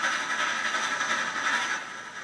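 A train running: a steady hissing noise with no clear rhythm, which cuts off just before the end.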